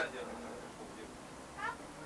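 A cat meowing faintly, one short rising call about one and a half seconds in.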